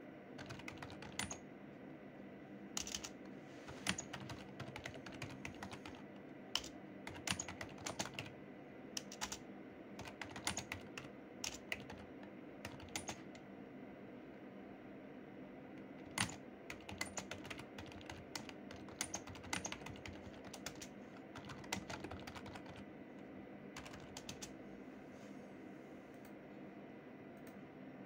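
Typing on a keyboard: irregular runs of key clicks broken by short pauses, over a steady low hum.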